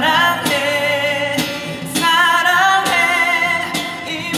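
A male voice singing held notes with vibrato over a strummed acoustic guitar, about one strum a second.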